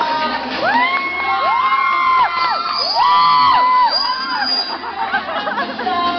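Audience screaming and cheering: several high-pitched shrieks that rise, hold and fall away, in two waves, with music playing underneath.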